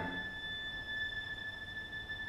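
A violin holding one high note, soft and steady.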